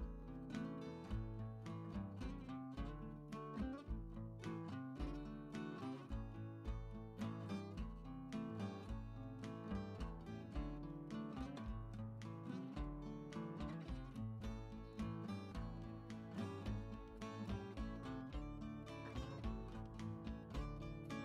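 Instrumental background music led by plucked acoustic guitar, playing steadily over a repeating bass line.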